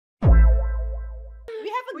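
Edited-in electronic bass-drop sound effect: a sudden deep boom with a fast falling pitch and a ringing tone above it, fading over about a second. It cuts off abruptly as an excited voice breaks in near the end.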